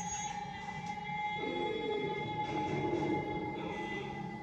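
Film score music with sustained held tones, heard through a TV speaker, with a wavering voice-like melodic line entering about a second and a half in.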